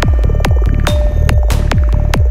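Psytrance playing: a kick drum falling in pitch on every beat, about 140 beats a minute, with a rolling bassline filling the gaps between kicks, a held synth tone and short hissing sweeps over the top.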